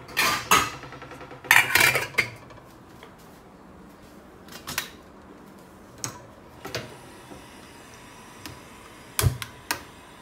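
Metal cookware clattering and knocking on a stainless steel gas stovetop, in separate bursts: the loudest near the start and about two seconds in, with a few single knocks after that and another cluster near the end.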